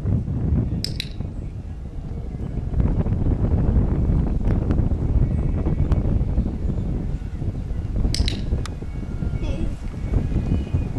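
Wind buffeting the microphone outdoors: a steady low rumble. Two brief high chirps cut through it, about a second in and again near the end.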